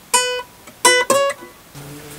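Nylon-string classical guitar: three single plucked notes, each ringing and dying away, the last two in quick succession about a second in.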